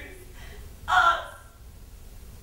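A person's voice: one short vocal sound about a second in, over a faint steady low hum.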